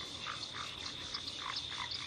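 A chorus of frogs croaking, with short calls repeating several times a second over a faint steady high tone.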